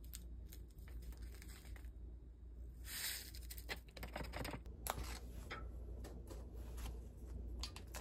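A paper-foil sachet of powdered ramen soup base is torn open with a short rip about three seconds in. Faint rustling and light ticks follow as the powder is shaken out over the noodles in the cup.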